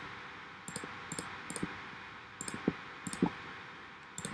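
Several scattered, light clicks of a computer mouse over a faint steady hiss.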